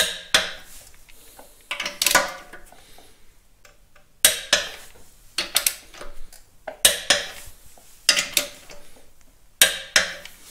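Ratchet wrench and socket drawing down the steel bearing-cap nuts on a bevel shaft: short bursts of ratchet clicking and metal clinks, about every second or so, as the cap is pulled down onto its shim pack to set the bearing preload.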